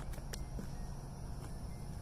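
Outdoor ambience: a steady high insect buzz over a low rumble of wind on the microphone, with a couple of light clicks in the first half-second.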